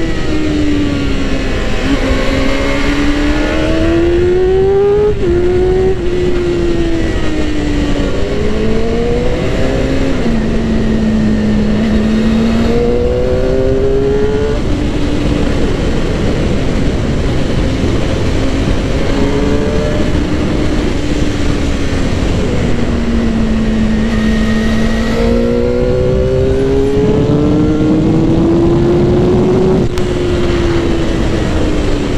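Suzuki GSX-R600 inline-four engine under way, its pitch rising as it accelerates and dropping suddenly at gear changes, then falling away again several times, over a steady rush of wind noise.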